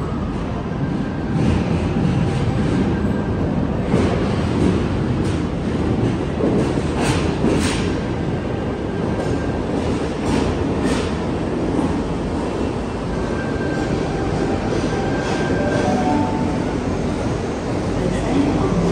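Sydney Trains Tangara (T set) electric train running in from the tunnel and along an underground platform: a steady rumble with a few sharp clacks from the wheels on the rails and faint high squealing tones at times.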